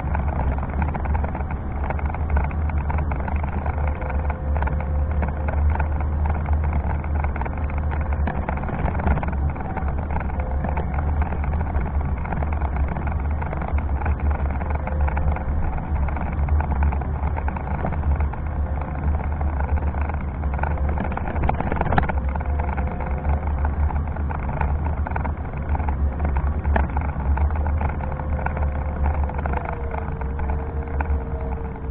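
Meyra Optimus 2 electric wheelchair driving along a paved street: a steady low rumble of its wheels and drive on the road surface, with a faint motor whine that comes and goes. A single sharp knock about two-thirds of the way through.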